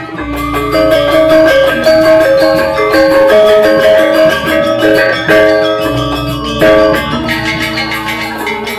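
Balinese gamelan music for the Rejang dance: bronze metallophones play a steady run of struck, ringing notes, and a low gong sounds twice, just after the start and again near six seconds.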